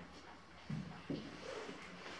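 Faint footsteps on a debris-strewn cellar floor: two soft steps close together about a second in, over quiet room tone.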